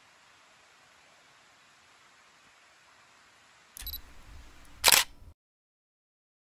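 Camera shutter: a click with a low rumble about four seconds in, then a loud, sharp shutter snap about a second later, after a few seconds of faint hiss.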